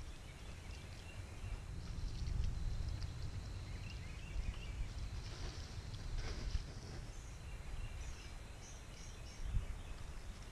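Water poured from a plastic jug onto a smouldering campfire's hot coals and ash, hissing as it puts the fire out, over a steady low rumble. Birds chirp near the end.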